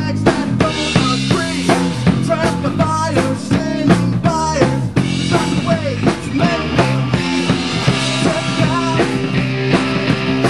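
Live rock band of electric guitars and drum kit playing an instrumental passage without vocals, the drums keeping a steady beat under a guitar line that bends up and down in pitch.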